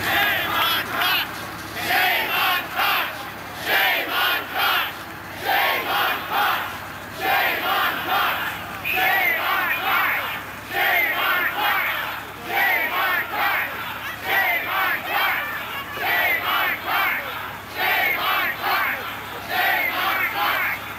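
A large crowd of protesters shouting together in unison, the chant coming in short, repeated rhythmic bursts.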